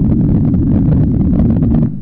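LIGO gravitational-wave interferometer noise played back as audio with the high-pitched electronic hiss filtered out: a steady low rumble of the detector's own vibrations, not gravitational waves. It cuts off suddenly near the end.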